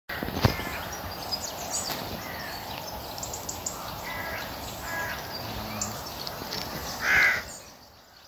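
Birds calling outdoors over a steady background hiss: a sharp click just after the start, scattered short high calls, and a louder harsh call about half a second long near the end.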